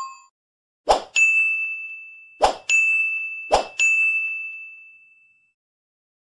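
Three bright metallic dings, each coming just after a short sharp hit and left ringing to fade out. The last one rings longest, about a second and a half.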